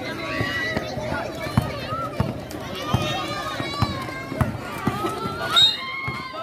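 Spectators shouting and cheering at a basketball game, with sharp thumps at an even pace of about one every 0.7 seconds: a basketball being dribbled on a concrete court as play runs up the floor. A loud high shout comes near the end.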